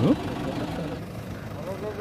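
A vehicle engine idling under several people's voices talking. A short, sharply rising sound right at the start is the loudest moment.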